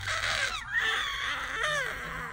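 Baby squealing happily: a run of high-pitched vocal sounds whose pitch rises and falls.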